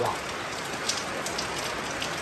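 Steady rain falling, an even hiss with a few scattered drop ticks.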